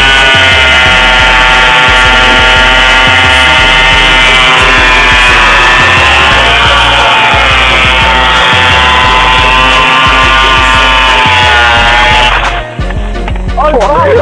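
Two-stroke scooter engine held at high revs while the rear tyre spins in a burnout, its revs dipping briefly about halfway and picking up again, and it cuts off shortly before the end. A music track with a steady bass beat plays underneath.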